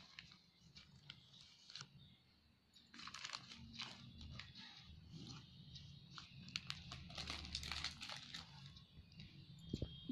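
Faint scraping, tapping and crunching of a metal spoon scooping dry powder and tipping it into a plastic tub, in short irregular strokes, with a steady low hum underneath.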